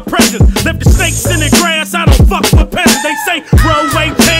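Hip hop track: a rapper's vocals over a beat with repeated kick drum hits and a steady bass line.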